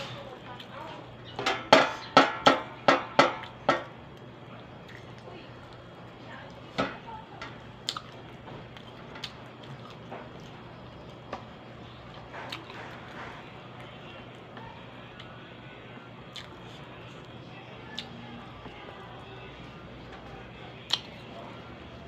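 A short run of about eight quick, loud vocal bursts from a woman, about two seconds in; then scattered soft clicks and mouth sounds as she chews boiled banana, over a steady low hum.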